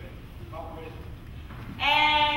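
Faint speech, then near the end a loud, drawn-out high-pitched cry begins.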